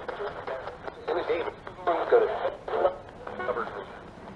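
Spirit box, a handheld radio sweeping rapidly through stations, putting out chopped, tinny fragments of broadcast voices with static between them. The investigators take one fragment as the words "yes, David".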